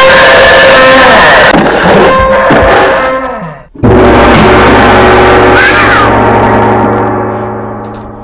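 Loud dramatic sound effects laid over the picture: a ringing, gong-like tone that cuts off sharply about four seconds in, then a second ringing hit with a deep hum that slowly fades away.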